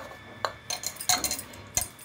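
Bangles on a wrist clinking against each other and the metal rim of a pressure cooker as a hand mixes flour into wet dal and chopped bathua leaves: a handful of short, sharp clinks spread through the moment.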